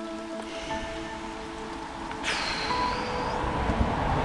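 Heavy rain falling steadily, with background music fading out in the first second. About two seconds in, a louder hiss sets in and keeps growing.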